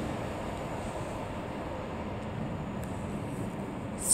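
Steady low rumble and hiss of outdoor background noise, even throughout, with no distinct events.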